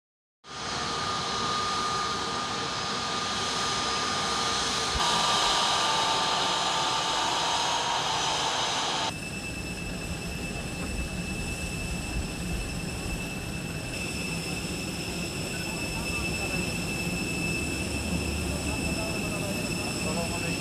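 Jet airliner's turbofan engines running as it taxis, a steady roar with whining tones. About nine seconds in the sound cuts to a quieter steady noise with a high whine beside the parked jet.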